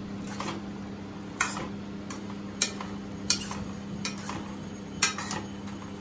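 Metal spatula stirring potato and radish pieces in a metal kadhai, clinking and scraping against the side of the pan several times. A steady low hum runs underneath.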